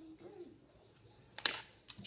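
A faint tune dies away, then two sharp clicks about half a second apart near the end from a lip liner pencil being handled.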